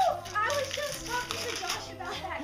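Indistinct talk from children and family, with wrapping paper rustling and tearing as a gift is unwrapped.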